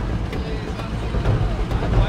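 Car engine running low as a vintage sedan drives slowly, with background voices of people in the street.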